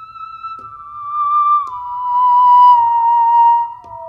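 Ondes Martenot playing a slow falling line of about four notes in a pure, singing electronic tone. Each note slides down into the next, with the last and widest slide near the end.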